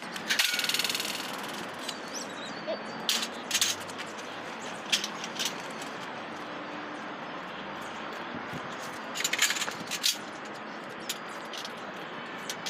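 Aluminium solar mounting rails being handled: a metallic scraping rattle about half a second in that lasts about a second, then scattered clinks and knocks of metal on metal. Steady outdoor background noise runs underneath.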